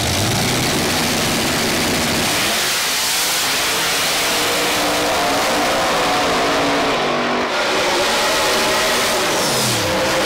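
Two drag cars launching at full throttle side by side, engines revving hard with the pitch climbing, dropping back at each gear change and climbing again as they pull away down the strip.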